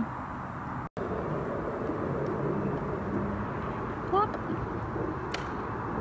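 Steady outdoor background noise, an even low rush like distant traffic, that cuts out briefly about a second in. A faint, short voice sound comes near four seconds and a small click a second later.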